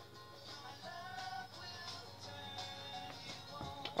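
Faint music with a melody leaking from over-ear game headphones turned up very loud.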